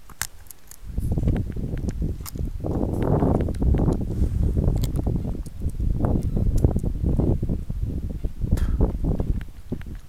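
Wind buffeting the camera's microphone in gusts, a loud low rumble that rises about a second in and eases off near the end, with scattered clicks and knocks as the camera is handled and turned.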